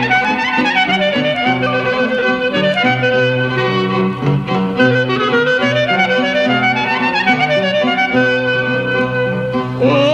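Clarinet playing an ornamented, gliding instrumental passage of a Greek tsamiko over sustained low accompaniment, on an old 1936 recording.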